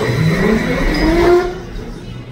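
A motor-like revving sound that climbs steadily in pitch for about a second and a half and then drops away, heard at the toy-motorbike kiddie ride.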